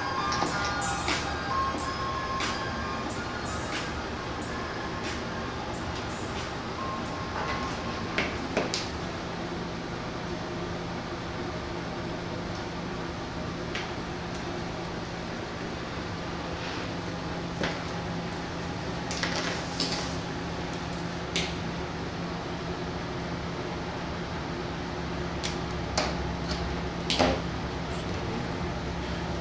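Faint music playing through a keychain-sized amplifier and its 1-inch speaker, over a steady low hum. Scattered small clicks and taps come from wires and a 9-volt battery clip being handled.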